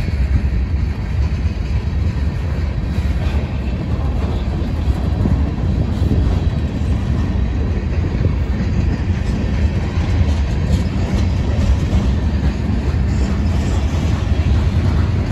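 Freight train cars rolling past close by: a steady rumble of steel wheels on the rails from a string of boxcars, a tank car and covered hoppers.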